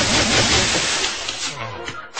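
The soldier termite's acid-spray effect, a spray of water at the audience, with the audience shrieking and laughing; the dense rush of noise fades out after about a second and a half.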